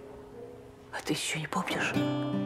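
A woman whispering in short breathy bursts from about a second in, over faint, steady background music.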